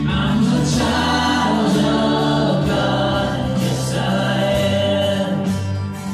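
Live church worship band playing a song: several voices singing together over acoustic guitar and bass guitar.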